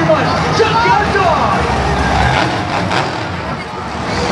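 Monster truck engines running on a stadium track, mixed with crowd noise and voices.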